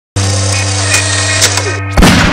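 A steady, loud, low electric-sounding hum with a couple of sharp metallic clicks, cut off right at the end by the sudden blast of a handgun shot, part of a produced intro sting.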